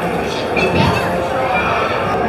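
Attraction soundtrack from the audio-animatronic scene: one short, harsh vocal cry about half a second to a second in, over the ride's steady background sound.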